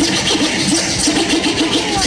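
A DJ scratching a vinyl record on a turntable in quick back-and-forth strokes, about five a second.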